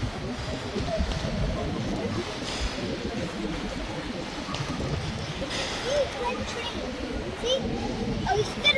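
Indistinct talking, too faint or jumbled to make out, over a steady background rumble.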